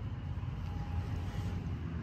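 A steady low rumble of background noise, with a faint thin hum for about a second in the middle.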